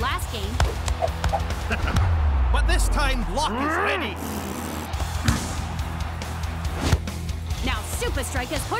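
Cartoon football soundtrack: driving background music with wordless vocal sounds over it. A low falling rumble comes about two seconds in, and two sharp hits land near five and seven seconds in.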